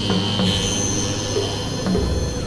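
Experimental electronic synthesizer drone: high, steady squealing tones over a low hum, with short low blips and a few sharp clicks. A second, higher tone comes in about half a second in.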